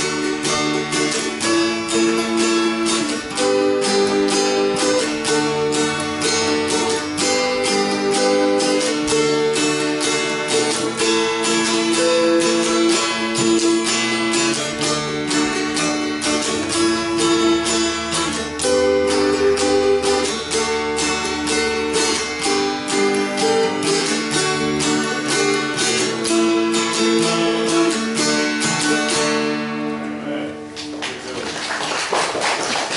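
Instrumental hymn tune played on acoustic guitar and dulcimers: fast, steady picking of many plucked notes. The tune ends at the very close, its last notes ringing out.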